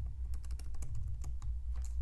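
Typing on a computer keyboard: a quick run of keystroke clicks, over a steady low hum.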